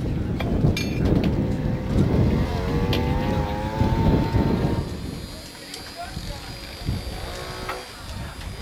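A low rumble fills the first half, with an indistinct voice over it from about the third to the fifth second. It turns quieter in the second half, and a voice comes in again briefly near the end.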